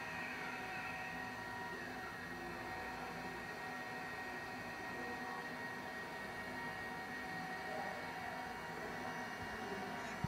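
Faint steady whir and hiss with a thin high tone held throughout; a couple of faint falling tones slide down in the first two seconds.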